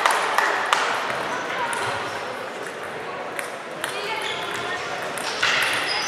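Table tennis balls clicking off bats and tables, irregular and overlapping as if from several tables at once, over voices chattering in a large hall.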